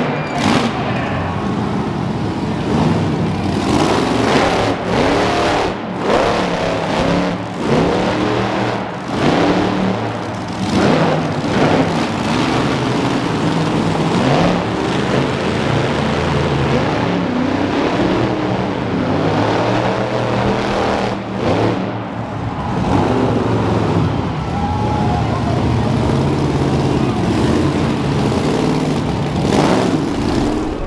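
Monster truck engine revving hard again and again, its pitch climbing and falling with each burst of throttle.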